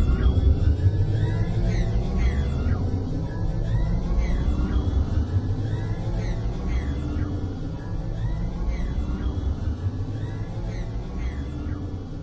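Ambient electronic music from a VCV Rack virtual modular synth patch: a deep, dense rumble sits underneath while repeated echoing tones sweep downward in pitch, a few each second, with faint held notes in between.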